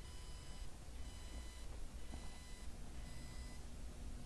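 Quiet room tone: a low steady hum with faint, thin high-pitched whine tones that come and go.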